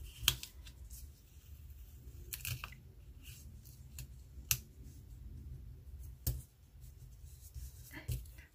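Quiet handling of paper planner stickers as one is peeled up and pressed back down on the page: soft rustling with a few short, sharp paper clicks spread through.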